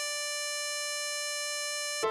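Tremolo harmonica holding one long draw note on hole 10 (D5 in the tab), a steady sustained tone that changes to the next note right at the end.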